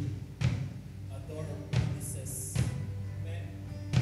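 Pearl Forum Series acoustic drum kit playing a few heavy, spaced kick-and-tom hits with a cymbal ringing briefly near the middle, over a steady sustained keyboard and bass pad from the worship band.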